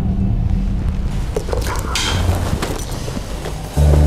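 Low, dark background music drone, with a few light clicks and rustles of handling about a second and a half in. Near the end a louder passage of low bowed strings comes in.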